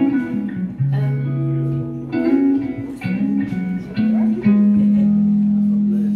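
Live band playing a slow song intro on guitar and bass guitar: plucked notes and held chords, with one long held low note near the end.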